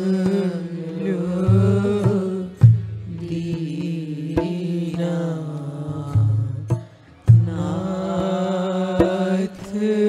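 Hindu devotional bhajan: a voice sings a slow, wavering melodic line over a steady low accompaniment, with sharp percussion strokes about once a second.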